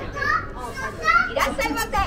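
Children talking: a short phrase near the start, then a longer, louder stretch from about a second in.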